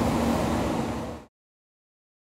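Steady background hiss of workshop room noise. It fades and cuts off into silence a little over a second in.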